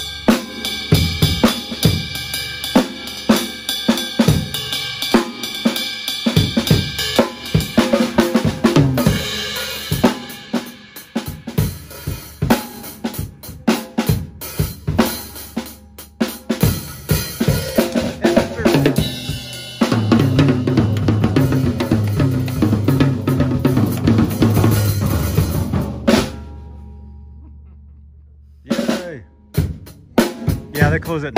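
DW acoustic drum kit and cymbals played as a solo: a run of snare, tom, bass-drum and cymbal strikes. About two-thirds of the way in it builds into a fast, dense roll around the toms and kick. The roll stops suddenly, the kit rings away and fades, and a few more strikes come right at the end.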